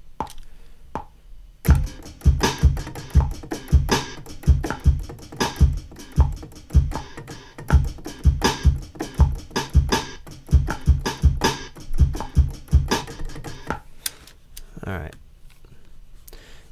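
Drum hits sliced from a sampled breakbeat loop, with kick, snare and hi-hat, triggered from Logic Pro's EXS24 sampler as a new beat. A few lone hits come first. A tight, continuous run of hits then starts about two seconds in and stops about three seconds before the end.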